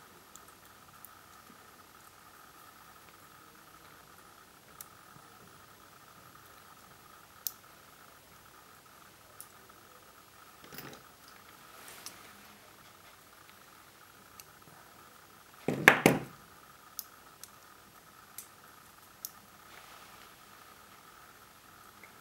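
Faint small clicks and taps of metal hand tools and socket parts being handled on a tabletop, over a faint steady high tone. About sixteen seconds in comes a louder, brief clatter, as of pliers being set down on the table.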